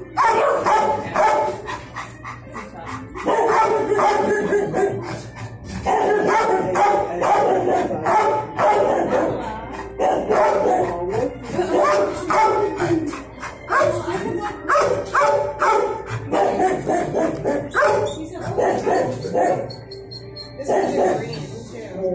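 Dogs in a shelter kennel block barking and yipping almost without pause, with short lulls about three seconds in and near the end.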